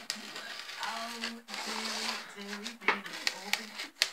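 Craft knife scoring around a cardboard circle: scratchy cutting strokes and several sharp clicks, most of them in the second half. A voice hums a few low notes underneath.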